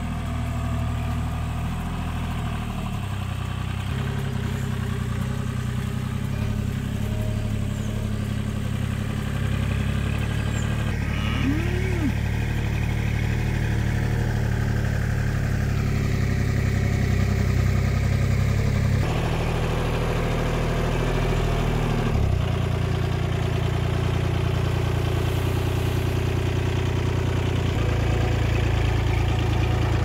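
Tractor engine running steadily, with its speed and load shifting a few times. A cow lows briefly about twelve seconds in.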